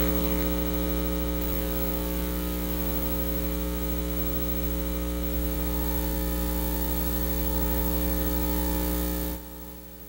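Loud, steady electrical mains hum on the audio feed as a videotape is brought up for playback. It drops sharply to a quieter hum near the end.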